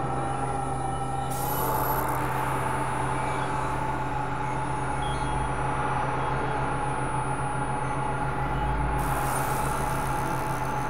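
Dense layered electronic drone: a steady low hum and a held mid-pitched tone over a noisy, rumbling bed. A high hiss comes in about a second in and drops out near the end.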